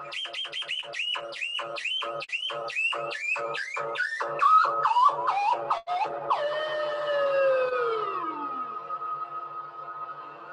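Modular synthesizer jam: a fast run of short chirping blips, about three or four a second, stepping down in pitch over a steady drone and a soft low pulse. After about six seconds the chirps give way to one long falling glide. The sound is thin and lo-fi, picked up poorly over a video call.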